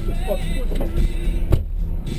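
Car idling, heard from inside the cabin as a passenger gets out, with a single sharp knock about one and a half seconds in, typical of the rear door being shut.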